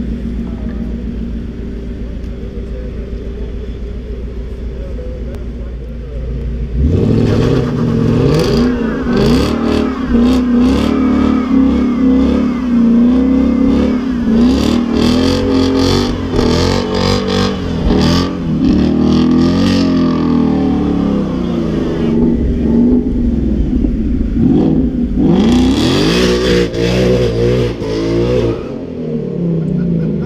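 Whipple-supercharged Ford Mustang GT's V8 idling, then revved hard after about seven seconds in a line-lock burnout, the rear tyres spinning as the revs climb and fall again and again. After a lull it revs hard once more for a few seconds before easing back.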